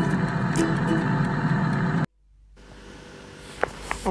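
Krypton air fryer running, its fan blowing a steady whoosh that stops abruptly about halfway through. Faint room noise follows, with two small clicks near the end.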